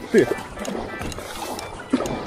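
A paddle working the water as an inflatable packraft is driven hard at top speed: steady splashing and water rush around the hull, with a few soft splashes of the blades.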